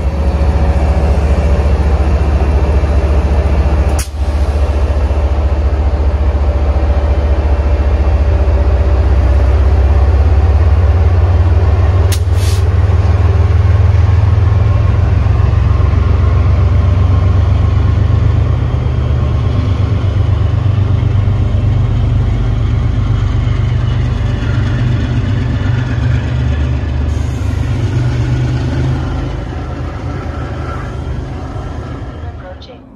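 MBTA HSP46 diesel locomotive's engine running with a deep steady rumble as its commuter train departs, fading slowly over the last ten seconds. Two sharp short clicks cut through, about four seconds in and about twelve seconds in.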